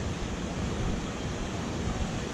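A steady rush of flowing stream water, with a low flickering rumble of wind on the microphone.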